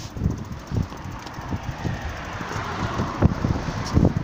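Handling noise from a phone microphone rubbing and knocking against a jacket and ball as it is carried, with wind buffeting the microphone: irregular low thumps and rumble.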